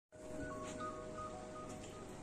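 Faint electronic tones over low room tone: a steady hum-like tone, with a few short, higher beeps coming and going.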